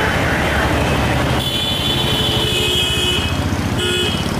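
A motor vehicle engine running, a steady low rumble. A thin high tone joins it about a second and a half in and holds for nearly two seconds, coming back briefly near the end.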